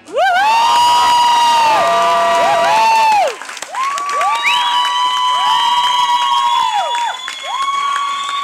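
Audience cheering with long, high-pitched whoops. Several overlap, each sliding up, held for a second or more, then falling away, with a brief lull about three seconds in.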